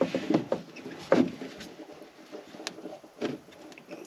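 Hands working under a boat's deck panel: scattered light knocks and clicks, with a sharper knock about a second in.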